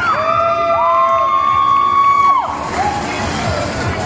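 Crowd noise in a busy hall, with long high held notes rising above it. The notes step up in pitch once and cut off about two and a half seconds in.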